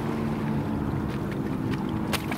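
Steady low engine hum of a motorboat out on the water, with wind noise on the microphone and water washing against the rocks.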